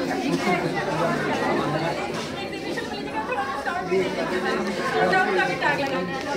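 Overlapping chatter: several people talking at once, none standing out clearly.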